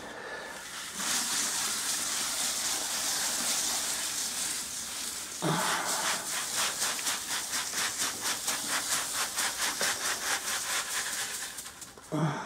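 Crushed malt grain pouring from a bucket into hot strike water in a mash tun: a steady rushing hiss starting about a second in. About halfway through it turns into a quick pulsing patter, around four surges a second, as the last of the grain runs out.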